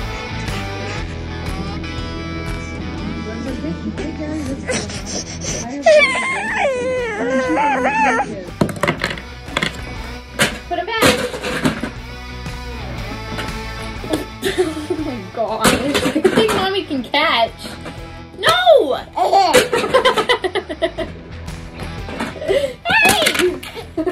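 Background music at first, then a small child's voice laughing and squealing, with scattered sharp knocks.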